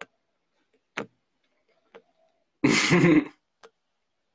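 A man's single short, throaty vocal burst about two and a half seconds in, preceded by a couple of faint clicks.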